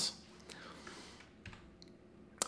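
Two faint, sharp clicks about a second apart over quiet room tone: computer input clicks advancing a presentation slide.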